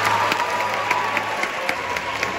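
Audience applauding at the end of a sung duet. A held musical tone sounds under the clapping and stops a little over halfway through.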